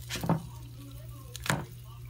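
Slotted spatula knocking against a small frying pan twice, about a second apart, as a pancake is slid under and flipped, over a steady low hum.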